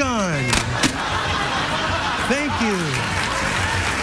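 Studio audience applauding over stage music, with a couple of sharp knocks in the first second before the applause settles into a steady wash.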